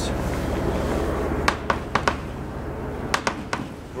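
Sharp metallic clicks and clanks from the steel mesh gate of an old counterweighted freight elevator being handled, in two short clusters of knocks over a low steady rumble.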